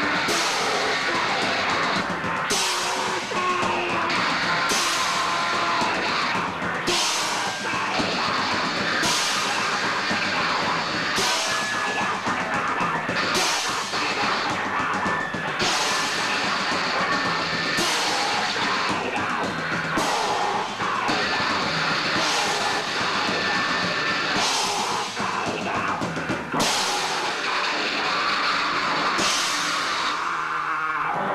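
Live band playing loud, dense noise rock, with the drum kit prominent and bright cymbal crashes about every two seconds.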